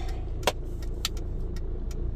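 Car engine idling, heard as a steady low rumble from inside the cabin, with one sharp click about half a second in and a few fainter ticks.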